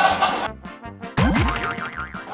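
Cartoon 'boing' sound effect over background music: a quick rattle of ticks, then a loud boing with falling pitch about a second in, trailing into a short warble. It is a comic sting marking a surprised reaction.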